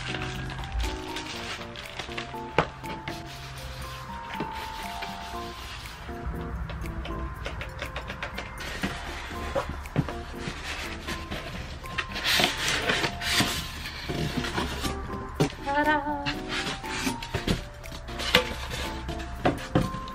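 Soft background music with a gentle melody, over the rustling, rubbing and small knocks of a cardboard box and foam packaging being handled, with a burst of rustling about two-thirds of the way through.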